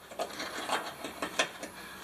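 Hand deburring tool scraping the cut edge of a drilled hole in a sheet-metal car body panel, in a quick run of short strokes that shave the burrs off.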